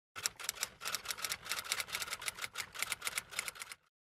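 Typewriter keys clacking in fast runs of several strikes a second, broken by short pauses. The strikes stop shortly before the end.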